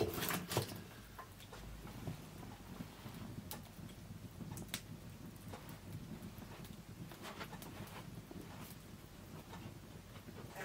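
Wood fire burning in an open hearth, crackling with scattered sharp pops. A couple of knocks at the start come from wood being placed in the grate.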